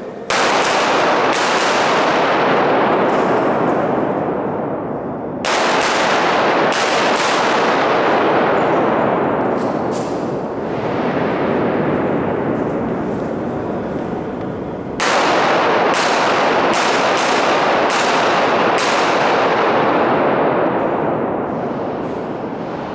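Handgun shots fired in three quick strings of several shots each: the first right at the start, the second about five and a half seconds in, the third about fifteen seconds in. Each shot rings on in a long echo off the rock walls of the underground mine gallery.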